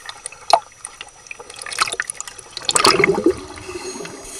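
Sea water slapping and splashing against a camera held at the surface, a few sharp splashes in the first two seconds, then a louder gurgling rush about three seconds in as the camera goes under.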